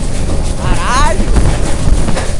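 Electric commuter train running at speed, heard from an open window: a steady rumble of the wheels on the rails with wind buffeting the microphone. About half a second in, a brief wavering high-pitched sound rises over the rumble for about half a second.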